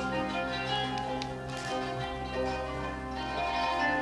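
Instrumental Turkish Sufi music: a kanun plucked over a low bass guitar line, with the bass dropping away near the end.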